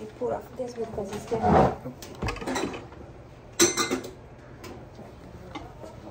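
Indistinct voices in a small room, then a brief clatter of knocks and clicks about three and a half seconds in.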